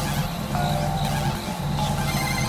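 Experimental noise music: a dense, continuous buzzing drone with steady low tones and a few thin held tones higher up.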